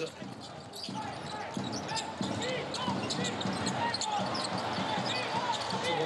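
Basketball being dribbled on a hardwood court amid arena crowd noise that grows louder after about a second, with short squeaks of sneakers on the floor.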